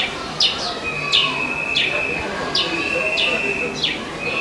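A bird calling over and over. Each call is a quick falling note that runs into a short, steady, high whistle, coming roughly every half second.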